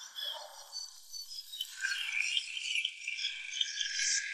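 Faint, high-pitched tinkling: scattered small chime-like notes with nothing low beneath them, growing a little busier about halfway through.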